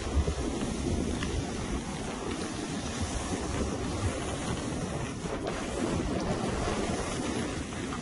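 Steady rushing wind noise on the microphone as the filmer moves down a snowy slope, blended with the hiss of sliding over snow.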